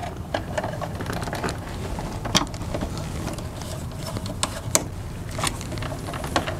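Wires and a screwdriver being worked into the breaker terminals of an RV converter/charger panel: scattered small clicks and taps, the sharpest about two seconds in and a few more near the end, over a low steady rumble.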